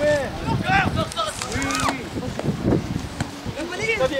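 Several short shouted calls from people around a youth football pitch, each rising and falling in pitch, over a low rumble of wind on the microphone.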